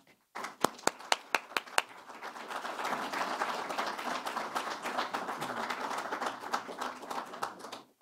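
Audience applauding: a few loud single claps near the start, then dense steady applause that stops just before the end.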